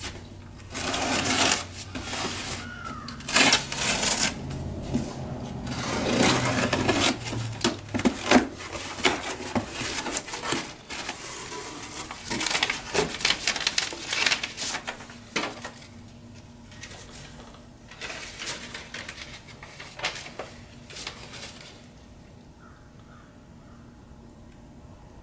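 Cardboard shipping box being torn open by hand: a run of ripping, scraping and crackling as the flaps are pulled open and the packing material and papers inside are rustled, dying down near the end.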